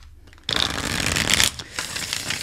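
A deck of tarot cards being shuffled by hand: a dense, rapid run of card flutter starts about half a second in and lasts about a second, then goes on more softly.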